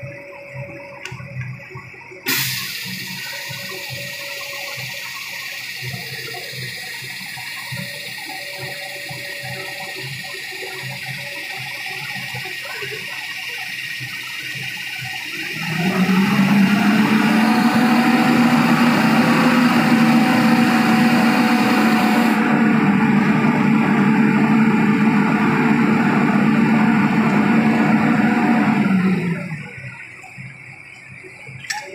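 A steady hissing rush sets in suddenly about two seconds in. Near halfway a much louder, steady engine drone joins it: the recovery crane truck's diesel held at raised revs to drive the crane. The drone stops shortly before the end.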